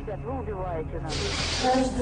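Faint voices in the original hostage footage, then a steady hiss that starts abruptly about a second in: the noise of an old video recording. A low steady hum joins it near the end.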